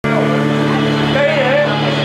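A steady electrical hum from the stage sound system. One person's voice rises and falls over it about a second in.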